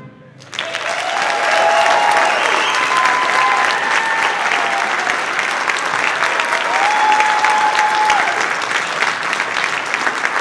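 Audience applauding a school jazz band, the clapping starting about half a second in, just after the band's last notes stop. A few drawn-out cheers sound over the clapping.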